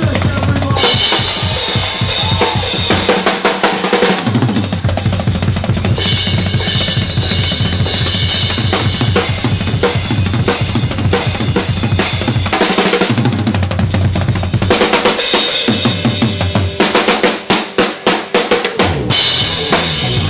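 Live drum solo on a full kit: fast snare and tom rolls over bass drum, with washes of K Zildjian cymbals. Near the end it breaks into separate, spaced hard strikes, then returns to dense playing with crashes.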